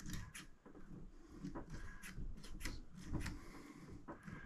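Quiet, irregular clicks and taps of pliers and a small electric starter motor's metal drive parts being handled on a workbench, just after the retaining clip on the drive gear shaft has been clamped back on.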